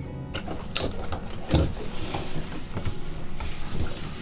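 Irregular clunks, clicks and rustling of objects being handled and set down, over a steady faint hiss.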